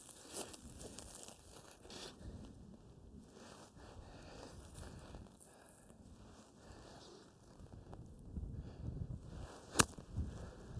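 Shoes and a golf iron rustling through long, dry dune grass as the golfer settles over a ball in thick rough. Just before the end, one sharp strike as the iron is swung through the grass and hits the ball.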